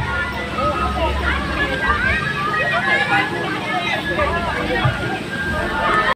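Crowd hubbub: many people chattering and calling out over one another, with no single voice standing out.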